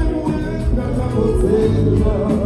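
Live kompa band music played loud through a club PA, with electric guitar and a male singer at the microphone.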